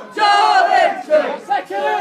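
Football crowd of many voices shouting and chanting together, loud, with a short dip in the noise about a second and a half in.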